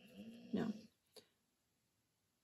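A woman's voice saying a drawn-out, hesitant "no" with a rising pitch, then a single faint click about a second in.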